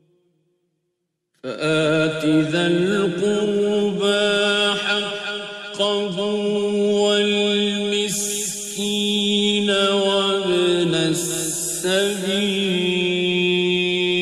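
Male reciter chanting the Quran in the slow, melodic mujawwad style: one voice with long held, ornamented notes, starting about a second and a half in after a brief silence.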